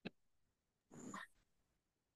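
Near silence, with a faint click at the start and a faint, brief sound about a second in.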